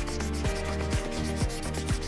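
Marker pen scratching and rubbing across a whiteboard as words are written, over background music with a steady beat.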